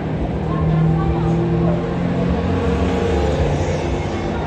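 Street traffic noise with a motor vehicle's engine running steadily, and people talking in the background.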